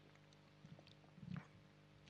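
Near silence while a man drinks from a plastic water bottle: a few faint clicks, then a soft gulp a little past a second in.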